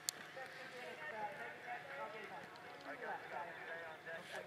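A horse cantering on arena sand, its hoofbeats under indistinct voices talking, with one sharp click just after the start.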